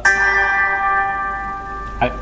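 A bell-like chime struck once, then ringing with several steady tones that fade slowly over about two seconds.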